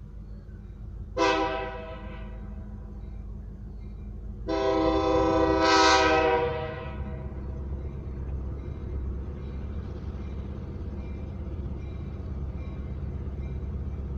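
Amtrak locomotive's K5LA multi-chime air horn sounding two uneven blasts, a short one about a second in and a longer one a few seconds later that swells before cutting off, played clumsily. A low rumble of the approaching train runs underneath and grows.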